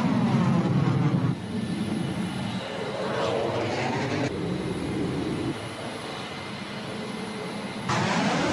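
F-22 fighter jet engine noise from a string of edited flight clips: a loud steady jet rush with sweeping pitch patterns of the aircraft passing. It changes abruptly at each cut, about a second in, around the middle and again at the end.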